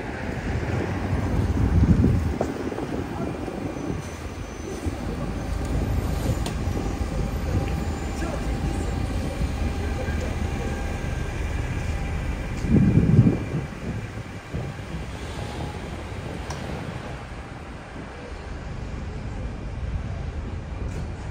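City street ambience: a steady low traffic rumble with faint steady tones above it, and two louder low rumbles, about two seconds in and around thirteen seconds.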